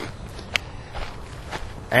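Steady outdoor background noise with two faint clicks about a second apart.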